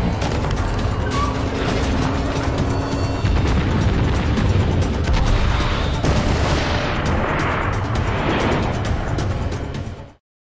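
Film soundtrack of a submarine firing torpedoes: dramatic music over deep booms and a heavy underwater rush. The rushing grows stronger in the second half.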